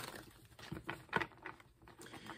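A deck of tarot cards being shuffled by hand: a scatter of soft flicks and taps as the cards slide and slap against each other.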